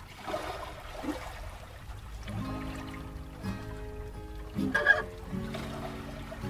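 Two acoustic guitars playing an instrumental intro, held chords and picked notes entering a couple of seconds in. A brief louder sound stands out just before five seconds in.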